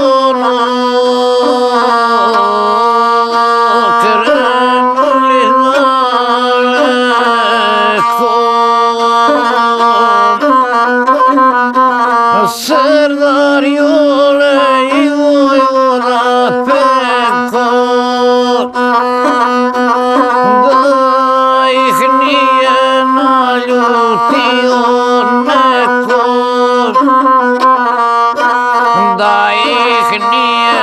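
Gusle, a single-string bowed folk fiddle, played with a bow in a continuous, wavering, ornamented melody over a steady low note. A man's voice sings along in the traditional epic style.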